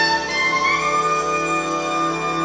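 Live big band of saxophones, trumpets, trombones and rhythm section playing a held chord, with one line sliding up about half a second in and then sustained.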